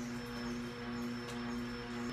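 Electric juicer's motor running with a steady low hum while herbs are fed into it.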